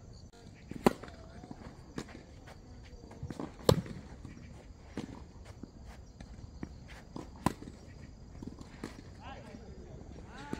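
Tennis rally: a tennis ball struck by rackets and bouncing on the court, sharp pops one to three seconds apart. The loudest is nearly four seconds in, with other loud ones about a second in and about seven and a half seconds in, and fainter pops between.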